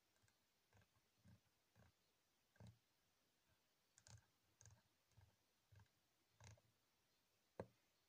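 Faint clicks of the pedal's push-and-turn wave edit knob being turned step by step, about a dozen at uneven half-second spacing, with a sharper one near the end.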